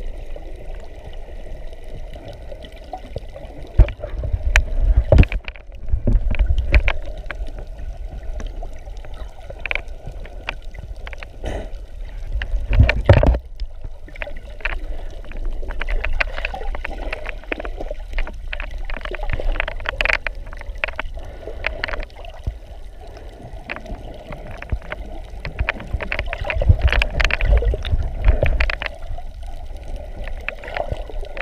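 Muffled underwater sound picked up by a camera held below the surface: a constant low rumble of moving water with many scattered clicks and crackles, swelling louder a few times.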